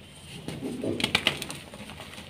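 A block of soft homemade gym chalk breaking apart in the hands: a dull crunch as it gives, then a few sharp cracks just after a second in as it snaps in two.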